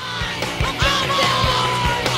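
Hardcore punk music: a yelled vocal held as one long note from about a second in, over a steady drum beat and bass.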